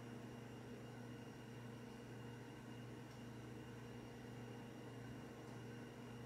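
Faint, steady room tone with a low electrical hum and a few thin steady tones; nothing starts or stops.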